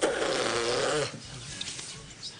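A raspberry blown on a small child's tummy: a buzzing lip trill against the skin, lasting about a second.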